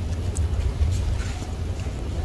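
Wind buffeting the microphone as a steady low rumble, with a few faint rustles of a plastic bag being handled.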